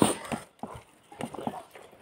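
Eating rice by hand: a string of short, irregular clicks and smacks from fingers working rice on a steel plate and from the mouth as a handful is eaten.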